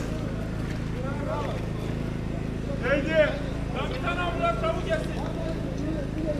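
Scattered voices of a crowd of rescuers, the loudest calls a little past the middle, over the steady low hum of an idling vehicle engine.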